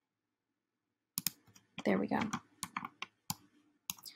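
About half a dozen sharp computer mouse clicks, starting about a second in and scattered irregularly, as corners are set in a drawing program.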